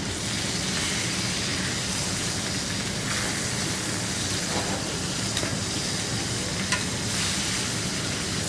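Chicken legs sizzling steadily as they fry skin-side in their rendered fat and oil in a stainless steel skillet, with a few light clicks of metal tongs against the pan as the pieces are flipped.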